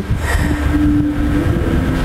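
A steady low engine rumble, like a motor vehicle running or passing, with one held tone in the middle.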